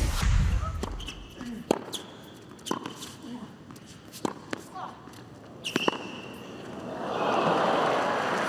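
A deep whooshing boom as a graphic sting, then a tennis rally: sharp strikes of racket strings on a tennis ball, about one a second, ringing in a large arena. In the last second the crowd noise swells.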